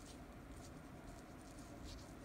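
Faint soft scratching of a brush pen's tip drawn across paper, a few short strokes at irregular moments as a character is written.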